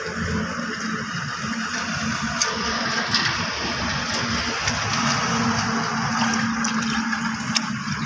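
Shallow water running steadily through a muddy channel, with background music.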